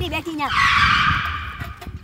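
Motor scooter skidding to a stop on dry dirt: a tyre skid starts suddenly about half a second in and fades away over about a second.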